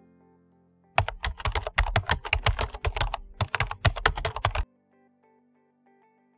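Computer keyboard typing: a fast run of keystrokes that starts about a second in and stops abruptly after about three and a half seconds, over soft background music.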